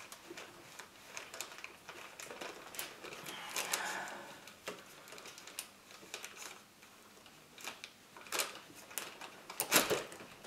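Pliers and a plastic release collar clicking and scraping against a fuel-line quick-connect coupling on a fuel rail, in small scattered ticks with a brief rustle partway through. Near the end comes a cluster of sharper clicks as the coupling's internal spring clips release and the line lets go.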